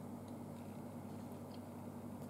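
Quiet room tone: a faint, steady low hum, with one very faint tick about one and a half seconds in.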